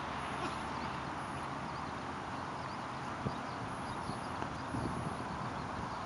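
Footsteps on a packed dirt field, a person walking with a dog at heel, coming in from about halfway through over a steady outdoor background hiss.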